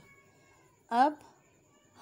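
Speech only: a woman says one short word, its pitch falling, about a second in, with quiet room tone around it.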